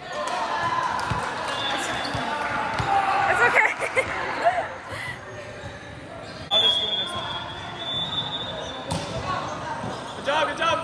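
Volleyball players' voices calling and shouting during a rally in a large indoor hall, with several sharp thuds of the ball being hit.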